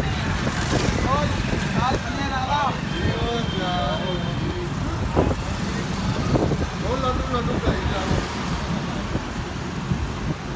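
Road traffic with a steady low rumble of passing vehicles, with people's voices talking at times.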